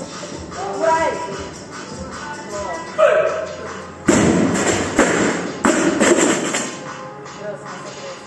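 Loaded barbell with rubber bumper plates dropped from overhead onto the gym floor: one loud crash about four seconds in, then two more bounces about a second apart. Gym music with vocals plays underneath.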